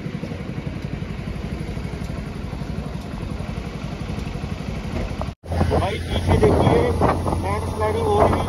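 A vehicle engine running steadily with a rapid low pulsing while driving. It breaks off suddenly about five seconds in, and voices follow, talking over a steady low hum.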